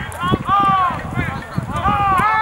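Men shouting across a rugby field at a ruck: loud, drawn-out, wordless calls, with the longest about half a second in and another at the end, over a few dull knocks.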